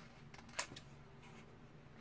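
A sharp click about half a second in, with a few faint ticks before it, as a stiff holographic glitter sticker sheet is handled.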